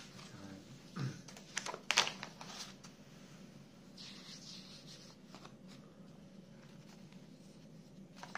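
Glossy magazine pages being turned and smoothed flat by hand: a cluster of sharp paper rustles and slaps about a second in, then a softer sliding swish of a page about four seconds in.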